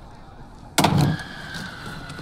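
A sudden heavy bang about a second in, followed by a faint ringing tone that lingers.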